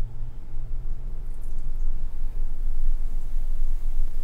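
Battered sandwich frying in a pot of hot oil: a faint, even sizzle over a steady low hum.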